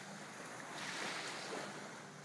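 Shallow lake water sloshing and lapping around a wading dog: a soft, noisy wash that swells a little about a second in.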